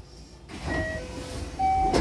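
JR Osaka Loop Line train's sliding passenger doors opening at a station: a door chime of a few short tones at stepping pitches over the rush of the door mechanism, with a knock near the end as the doors reach their stops.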